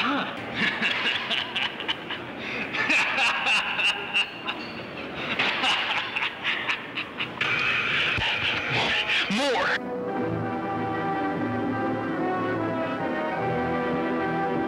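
Loud slurping and gulping from a coffee mug, full of wet clicks, for about ten seconds. It cuts off suddenly and music takes over.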